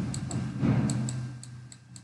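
Light, irregular ticking of a stylus tapping on a pen tablet while writing by hand, several clicks a second. Under it, a low hum fades away over the first second and a half.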